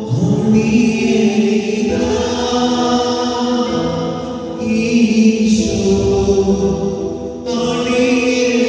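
Voices singing a slow hymn in long held notes that move to a new pitch every second or two.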